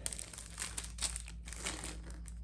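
Small clear plastic bag crinkling in irregular rustles as hands handle it and tip a few screws out of it.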